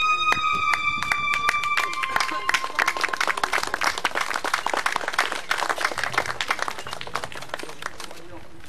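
Audience applause, many hands clapping, starting as the last held notes of the dance music fade out in the first few seconds, then slowly thinning out.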